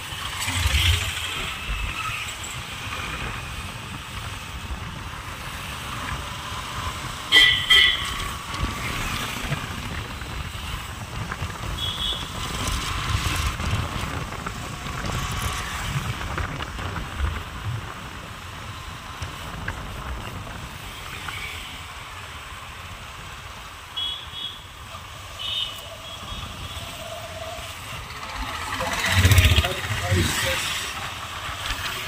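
Riding sound on a Honda SP125 motorcycle in town traffic: steady wind and road noise over the engine running. A few short horn beeps come about 7 s in, around 12 s and twice near 24–25 s, and a vehicle passes close near the end.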